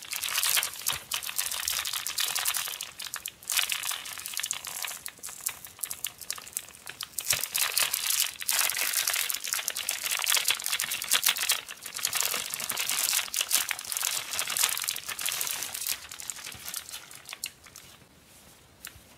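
Thin clear plastic bag crinkling in repeated bursts as hands open it and pull a towel out.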